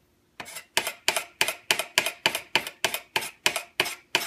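Knife blade scraping magnesium ribbon against a countertop in quick repeated strokes, about three to four a second, starting about half a second in. The scraping takes the dull oxide coating off the magnesium to leave it shiny.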